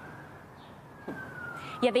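A siren wailing: one tone slowly rising, then falling over a couple of seconds, above steady background noise.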